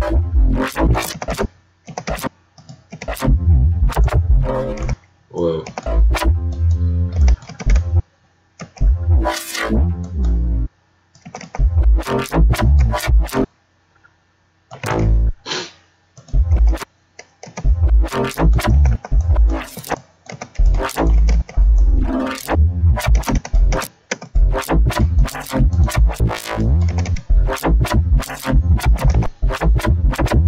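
Synthesized bass from FL Studio's Harmor resynthesizing a recorded Edison sample through a band-pass Patcher chain, its image time and speed automated. It plays in short phrases with heavy low end and rapid choppy cuts, stopping and restarting several times.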